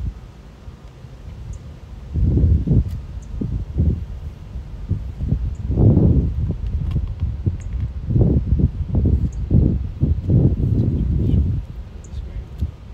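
Wind buffeting the microphone: gusty low rumbling that starts about two seconds in and dies away just before the end.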